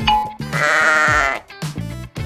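A goat bleats once, a long wavering bleat lasting about a second, starting about half a second in, over light children's background music.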